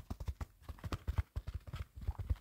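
Fast fingertip tapping close on the microphone: a rapid, uneven run of low, dull thuds, several a second.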